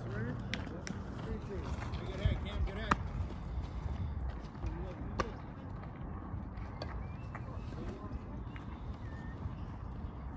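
Indistinct, distant voices of players and spectators over outdoor ambience at a youth baseball game, with a few light, sharp clicks.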